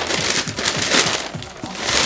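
Paper rustling and crinkling in irregular bursts as a sneaker box is opened and the wrapped shoes are pulled out, with music playing in the background.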